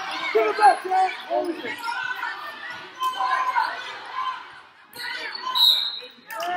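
A basketball being dribbled on a hardwood gym floor during play, with spectators calling out and shouting over it in a large echoing hall.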